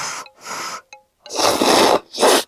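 A person slurping thin instant cup noodles and soup: two short slurps, then a longer, louder slurp from the cup's rim in the second half.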